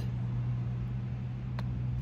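A steady low mechanical hum, with a single light click about one and a half seconds in.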